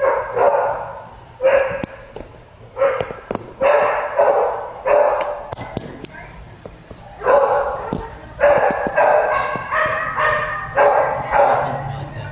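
A dog barking repeatedly, in runs of short sharp barks with a pause of about a second and a half near the middle.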